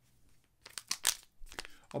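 Foil sachet of powdered energy drink being torn open by hand, crinkling and tearing in a run of sharp crackles starting about half a second in.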